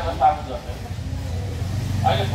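Steady low rumble of a motor vehicle on the street, with a brief burst of a man's voice right at the start.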